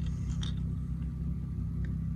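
A steady low hum with a few faint clicks as hard-plastic crankbait lures are handled in nitrile-gloved hands.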